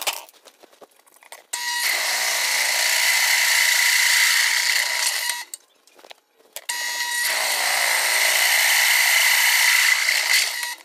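Drill press boring through steel flat bar: two runs of about four seconds each, with a short pause between them. Each run is a steady, loud, high whine.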